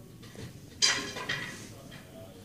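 A sudden sharp clatter a little under a second in, dying away quickly, followed by a smaller one about half a second later.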